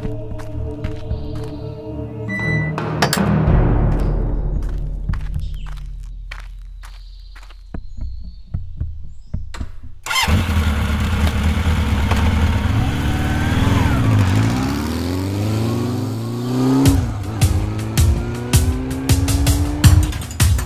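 Background music, then about halfway a sport motorcycle's engine comes in suddenly and revs, its pitch rising several times as it pulls away, under the continuing music with sharp beats near the end.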